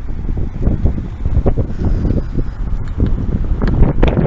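Wind buffeting the camera's microphone: a loud, gusty low rumble.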